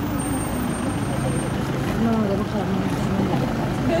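Voices of people talking in the background over a steady low engine rumble.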